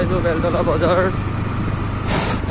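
A voice for about the first second, over a steady low vehicle rumble.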